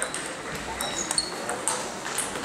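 A table tennis rally: the celluloid ball clicks sharply about five times as it is struck by the bats and bounces on the table, with voices talking in the background of a large hall.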